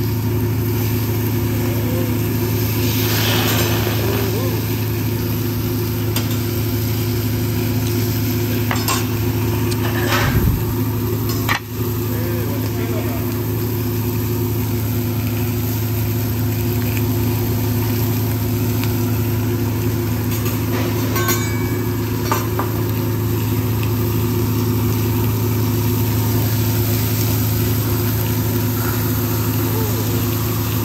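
Food sizzling on a hot teppanyaki griddle over a steady low hum, with a few sharp clicks of a metal spatula on the steel plate about ten seconds in.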